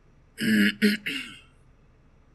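A man clearing his throat in three quick bursts lasting about a second.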